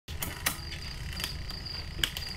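Crickets chirping in a high, pulsing trill over a steady low hum, with a few sharp clicks from work on a bicycle in a repair stand.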